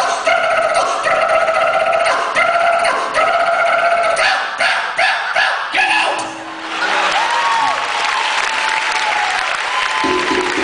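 Live vocal percussion: held, pitched mouth tones broken into rhythmic phrases, then a quick run of sharp percussive clicks. About six and a half seconds in it gives way to an audience applauding.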